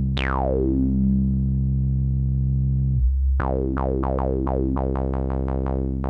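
Sawtooth note from an analog modular synthesizer, played through a Synthesizers.com Q107a state variable filter with the resonance turned up. An envelope sweeps the resonant cutoff down from high to low over about a second, exaggerating the harmonics it passes through, and the note then holds. From about three and a half seconds in, the note is retriggered about four times a second, each hit with its own short falling resonant sweep.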